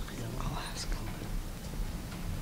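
Faint whispering and low murmured talk over a steady low room hum.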